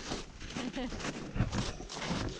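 Footsteps on snow while hiking, an uneven series of soft steps, with a short faint vocal sound a little under a second in.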